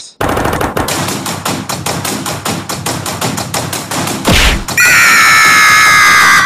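Cartoon sound effects: a rapid rattling run of hits, about ten a second, like machine-gun fire. About four seconds in comes a thump, then a loud, steady, high-pitched held tone for nearly two seconds.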